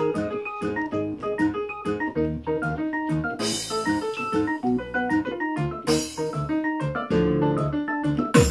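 Arranger keyboard played live: a fast, ornamented melody of quick runs of short notes over lower sustained notes, for a Qataghani (Afghan folk) tune, with no drum beat yet. Two brief bright shimmering swells come about three and a half and six seconds in.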